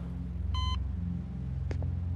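A bedside patient monitor gives a single short electronic beep, over a low steady hum, with a faint click near the end.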